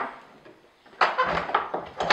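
A sharp knock, then about a second in a rough rustling and scraping of hay being handled against a wooden horse-stall front.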